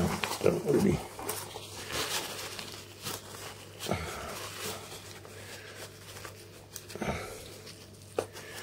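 Paper towel rubbing and rustling against a camera's plastic battery compartment, with a few soft knocks as the camera is handled in a cardboard box.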